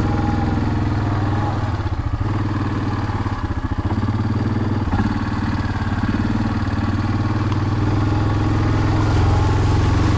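ATV (four-wheeler) engine running steadily at low speed as it crawls through muddy, water-filled trail ruts. The engine note wavers roughly two to four seconds in and gets louder near the end.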